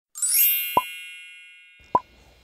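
Intro sound effect: a bright, sparkling chime that rings and fades away over about a second and a half, with two short pops, one just under a second in and one near the end as the logo appears.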